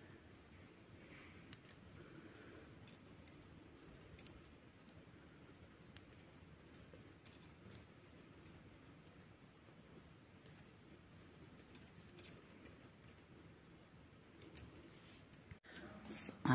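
Faint, irregular clicks of metal knitting needles touching as stitches are bound off, over near-silent room tone.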